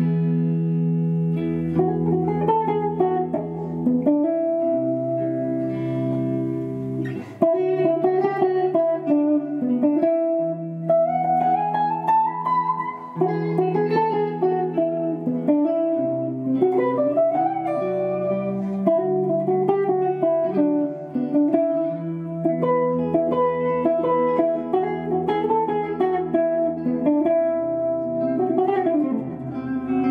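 Three electric guitars playing jazz together, with held low notes under chords and a moving melody line.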